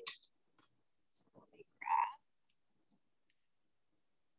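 A metal spoon clicking and scraping inside a glass jar of kimchi: a few light clicks, then a short, louder scrape about two seconds in.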